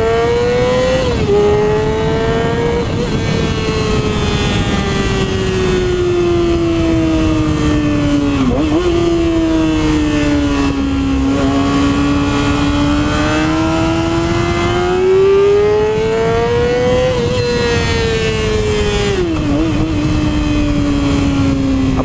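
Yamaha YZF-R6 599 cc inline-four engine on the move, its pitch climbing and falling with the throttle over several seconds at a time. Sudden short drops in pitch come about a second in, around eight seconds and near twenty seconds. The rider calls it a beautiful sound.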